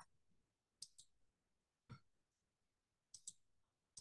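Faint clicks of a computer mouse in near silence: a pair about a second in, a single click near two seconds, and another pair a little after three seconds.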